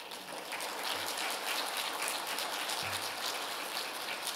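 Audience applauding: dense clapping that starts suddenly and goes on steadily.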